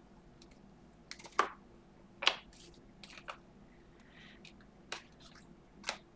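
Panini Prizm basketball cards snapping and clicking against each other as a stack is flipped through by hand. There is a handful of short, sharp snaps, the two loudest about a second and a half and a little over two seconds in.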